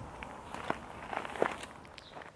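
Footsteps on gravelly, stony ground: a few separate crunches as a person gets up and steps.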